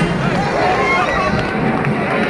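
A street crowd of many voices calling and shouting at once, overlapping with no single clear speaker.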